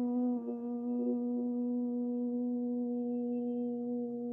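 A man's voice holding one long, steady toned note, a chant-like hum used in a guided meditation.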